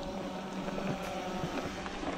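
Mountain bike riding a dirt singletrack: steady tyre and wind noise on the bike-mounted camera, with a low hum underneath and a few light knocks and rattles from the bike over the bumps.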